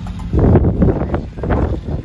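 Wind and handling noise on a phone microphone: loud, irregular rustling and bumping that starts about a third of a second in and lasts until near the end.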